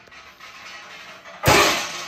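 Low room noise, then about one and a half seconds in a sudden loud noisy burst that dies away over about half a second.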